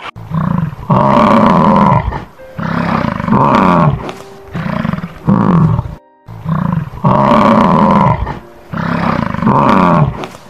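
Lion roaring: a series of loud roars, each about a second long, with short gaps between them, over soft background music.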